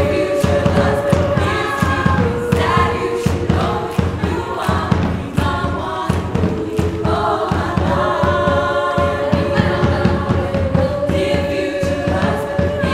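A women's group singing together in harmony over a backing track with a steady beat, with held sung notes throughout.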